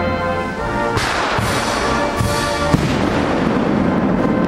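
Ceremonial band music holding sustained chords, cut by a loud crash about a second in and several more crashes after it, each dying away.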